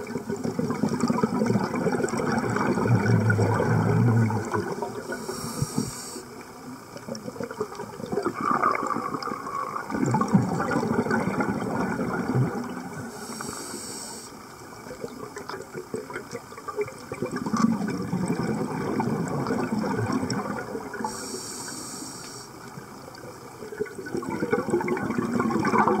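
Scuba diver breathing through a regulator underwater, about three full breaths. Each breath is a short hiss as the diver inhales, then a long bubbling rush as the exhaled air escapes.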